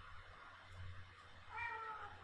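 A short, high-pitched cry lasting about half a second, falling slightly in pitch, about a second and a half in, over a low steady hum.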